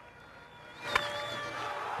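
A wooden baseball bat hits a pitched ball with one sharp crack about a second in. Faint stadium crowd noise and sustained music tones lie underneath.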